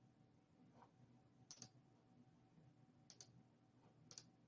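Near silence: faint room tone with a few faint clicks, two of them in quick pairs about a second and a half apart.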